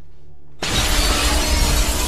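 Glass shattering in a sudden loud crash about half a second in, the spray of breaking glass running on over a deep low rumble.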